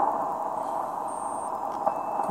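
Shortwave receiver's static hiss on the 40 m band in LSB while the dial is tuned slowly down, with no station heard: the band is quiet. A faint, brief high whistle comes through about a second in.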